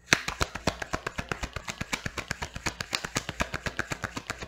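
A deck of tarot cards being shuffled by hand: a fast, steady run of light card clicks, about ten a second.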